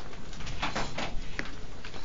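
Classroom background noise: shuffling and rustling, with a short squeak or creak falling in pitch about one and a half seconds in.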